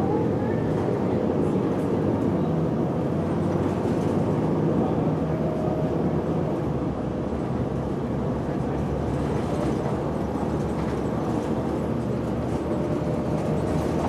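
Steady engine and road rumble heard from inside a moving city bus, with faint steady engine tones running through it.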